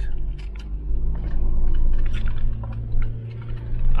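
Low, steady rumble of a 4x4's engine and tyres heard inside the cabin while driving over a dirt desert track, with small scattered rattles and knocks from the vehicle.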